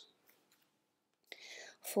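Near silence, then a soft breath drawn in for about half a second just before a woman's voice resumes.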